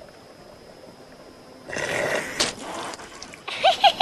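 A short noisy cartoon sound effect lasting about a second midway through, then a young girl's quick high-pitched giggle near the end.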